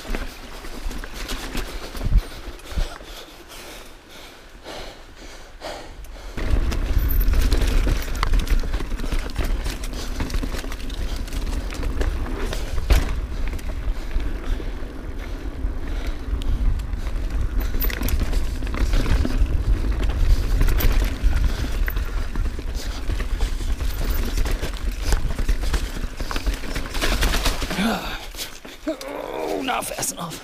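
Mountain bike descending a dirt and rock trail, heard from a bike-mounted action camera: knocks and rattles from the bike over rocks at first, then from about six seconds in a heavy, steady wind rumble on the microphone as the bike picks up speed, with tyre and chassis clatter throughout. A short vocal sound comes near the end.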